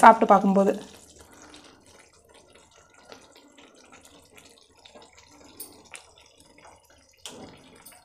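A voice speaking briefly at the start, then faint, scattered small plops and ticks from a pan of thick fish curry gravy being stirred with a wooden spatula.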